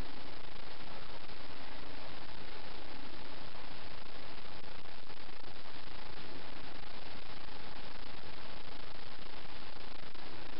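Steady, even hiss of the recording's background noise, with no distinct sounds standing out.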